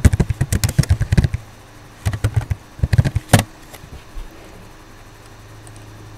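Computer keyboard typing: a quick run of keystrokes, then two short groups of clicks about two and three seconds in, over a steady low hum.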